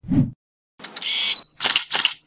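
Camera-shutter sound effects: a short low thump at the start, then a shutter release about a second in and two quick shutter clicks near the end.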